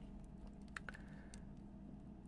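A few faint plastic clicks from a hard plastic action figure being handled, clustered near the middle, over a low steady room hum.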